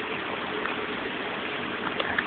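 A steady rushing background noise, even throughout, with a few faint ticks.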